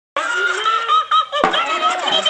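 Tickle Me Elmo toy laughing in its high, squeaky voice, with a short click about one and a half seconds in.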